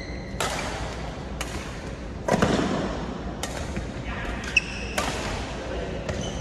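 Badminton doubles rally: rackets strike the shuttlecock about once a second, each sharp hit echoing in a large hall. The loudest hit comes a little past two seconds in. Short squeaks from shoes on the court floor come at the start and about four and a half seconds in.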